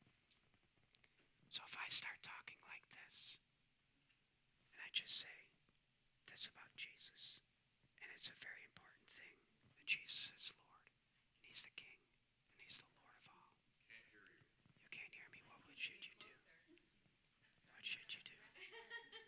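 Faint whispering in short bursts, with brief silent gaps between them.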